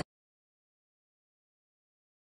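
Digital silence: the sound track cuts off abruptly at the very start and stays completely silent.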